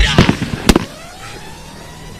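Backing music cuts off just as a shotgun fires, a sharp crack under a second in with a short echo trailing after it. A quieter stretch of open outdoor air follows.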